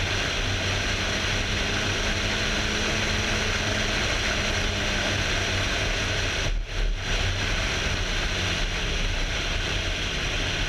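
Onboard sound of an MK Indy open-cockpit kit car at speed on a race track: a steady rush of wind noise over a low engine drone, dipping briefly about two-thirds of the way through.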